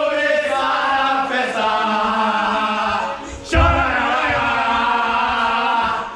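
A group of men chanting a football cheer together in a small tiled locker room. A loud burst of shouting comes about halfway through.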